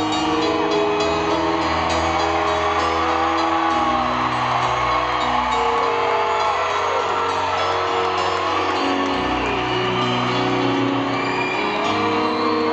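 Live rock band playing slow, held chords in an arena with no lead vocal, while the crowd cheers and whoops over it.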